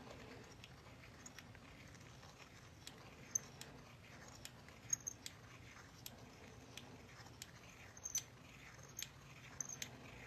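Handheld deburring tool shaving the rough punched inside edge of a copper-nickel clad 1969 quarter. Faint, irregular little scrapes and sharp clicks as the blade cuts away the burr.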